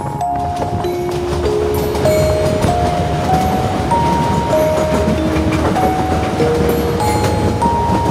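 A slow melody of clear single held notes, stepping up and down, plays over the steady low rumble of a train running along the track.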